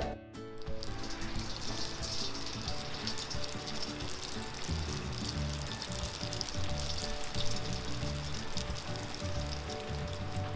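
Spring rolls deep-frying in a pan of hot oil: a steady sizzle and crackle of bubbling oil, starting about a second in, under quiet background music.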